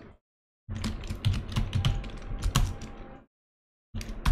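Computer keyboard typing: a quick run of keystrokes starting just under a second in and stopping a little after three seconds, with silence on either side.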